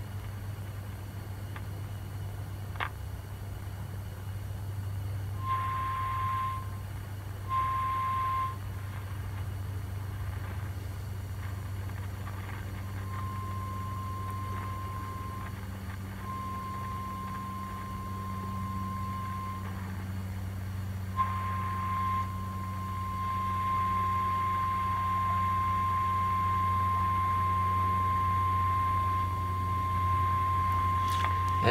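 Zenith 7S529 tube radio's speaker sounding a signal generator's steady test tone while the set is aligned on shortwave. The tone comes and goes in short spells as the tuning is adjusted, then holds steady through the last third, over a constant low hum.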